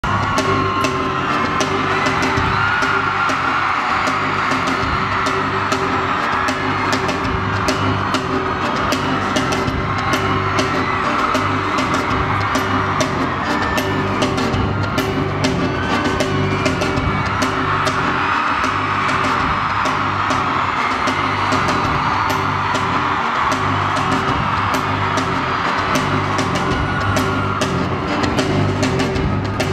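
Live band music over an arena sound system, with a steady bass pattern, and a large crowd screaming and cheering over it.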